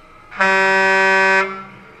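A horn sounding one steady blast of about a second, the signal for the race's mandatory driver change.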